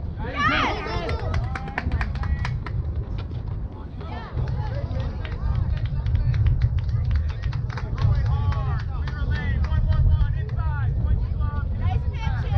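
Spectators shouting and cheering for a batted ball at a youth baseball game, loudest just after the swing, over a steady low rumble.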